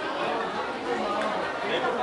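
Background chatter of many people talking at once in a busy restaurant dining room.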